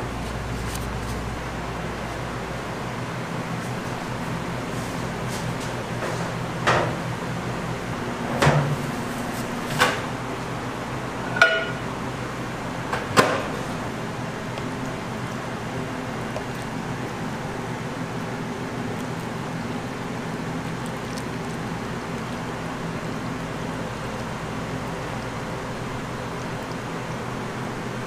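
Glass bowls and a jug being handled and set down: five short knocks between about 7 and 13 seconds in, over a steady low room hum.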